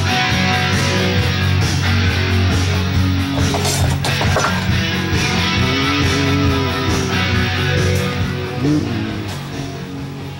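Music playing, led by guitar, with a steady bass and drums.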